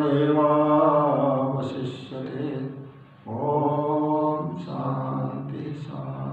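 A man's voice chanting a mantra into a microphone, in long held notes on a nearly steady pitch, with a short break about three seconds in.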